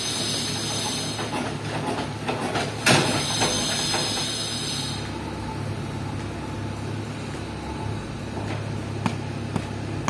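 JCB backhoe loader's diesel engine running as its bucket dumps soil, with a high hiss and one sharp knock about three seconds in. About five seconds in the hiss stops, leaving the engine's low hum with a few light taps.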